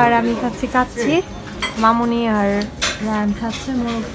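Plates and cutlery clinking at a dining table, with several sharp clinks, the loudest about three seconds in. A voice talks over them.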